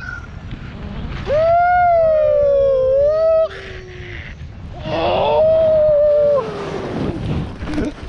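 A person's voice letting out two long, high-pitched whoops, each held for about two seconds with a slowly wavering pitch, the second starting about five seconds in. Beneath them is a low rumble of wind noise on the microphone as the tandem paraglider touches down and slides on the snow.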